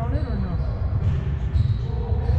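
Players' voices calling out across an indoor soccer hall, over a steady low rumble in the big room.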